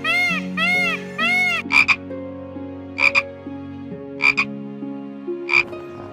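Dolphin calls: a quick run of squeaky rising-and-falling chirps, about three a second, then four short sharp double clicks spaced over a second apart, over soft background music.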